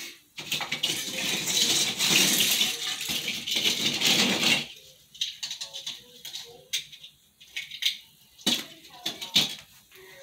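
Christmas ornaments rattling and rustling as they are handled and hung on an artificial tree. A dense rattle lasts about four seconds, then gives way to scattered light clicks.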